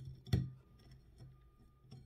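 Faint handling of thread being knotted around a wax candle, with one short knock about a third of a second in.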